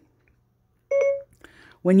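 Siri's listening chime on an iPad: a single short electronic beep about a second in, the device's answer to the "Hey Siri" wake phrase, signalling that it is ready for a command.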